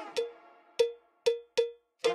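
Music: four sharp struck percussion hits, each with a short ringing tone, unevenly spaced.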